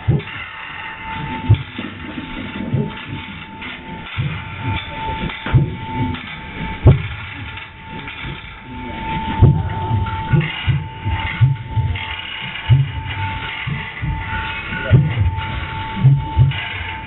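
Live improvised experimental electronic music: a steady high tone held with brief breaks, over irregular low thuds and a rushing noise.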